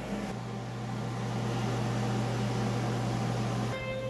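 Electric box fan running: a steady hum and whir that grows louder over the first two seconds and cuts off suddenly shortly before the end.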